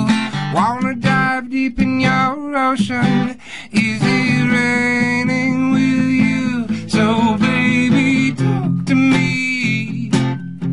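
A cover song played live on strummed acoustic guitar, with a voice singing the melody over it.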